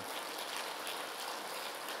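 Audience applauding.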